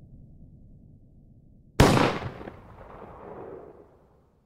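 A low, faint rumble fades away. About two seconds in comes a single sudden loud bang whose echo dies away over the next two seconds.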